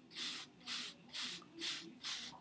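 Palm-held bristle hair brush sweeping over close-cropped hair, four soft brushing strokes about half a second apart.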